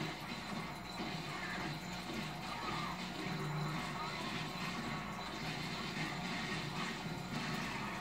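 Film soundtrack from a television, heard across a room: steady background music with some muffled voices.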